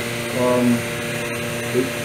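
Steady electric motor hum of the vacuum pump drawing on a prosthetic lamination bag, holding several fixed tones, with a brief vocal 'um' about half a second in.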